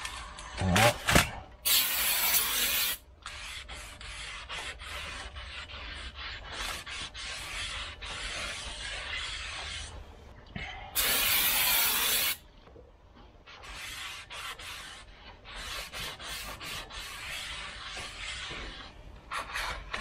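A rag rubbing and wiping over a new brake rotor, cleaning its wheel mating surface. Two loud hissing bursts of about a second and a half each come about two seconds in and about eleven seconds in.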